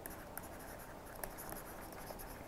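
Stylus writing on a pen tablet: faint scratching strokes with a couple of light ticks.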